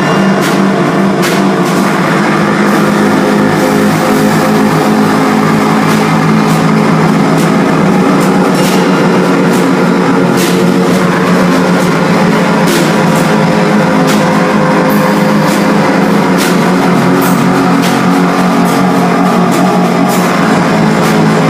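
Live band music played loud and without a break: trumpet over a drum kit and guitar, with cymbal strokes throughout.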